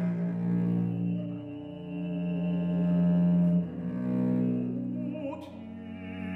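Viola da gamba playing a solo passage of long, low bowed notes that change pitch every second or two.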